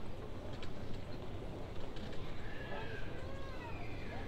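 Footsteps clicking on a paved sidewalk at walking pace over a steady low city hum, with passers-by talking faintly in the second half.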